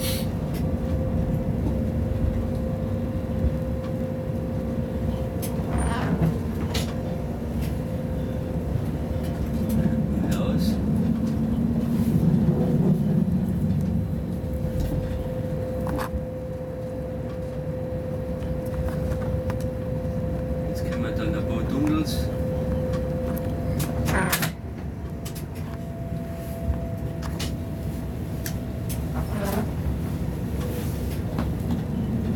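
Inside the cab of an ÖBB 1016 electric locomotive running along the line: a steady low rumble of the running train with a steady tone above it, and a few sharp clicks now and then. It gets slightly quieter about 24 seconds in.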